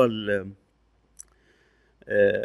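A man's voice trailing off in the first half second, then a pause broken by one short, sharp click about a second in and a few faint ticks.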